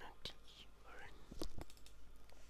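Faint whispered muttering, with a few soft clicks scattered through it.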